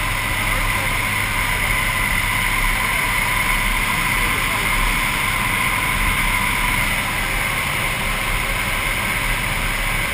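Steady loud drone of a jump plane's engines and propellers in flight, heard inside the cabin with wind rushing through the open door, a steady whine running through it.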